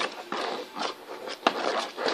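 Small LED bulb being slid and rubbed around the bottom of a plastic bin to build up static charge: soft uneven scraping with light taps, and one sharper click about one and a half seconds in.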